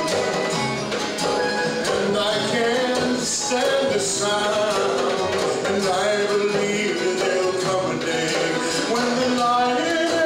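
Live acoustic folk song: a man sings to strummed acoustic guitar, with a goblet hand drum keeping the rhythm.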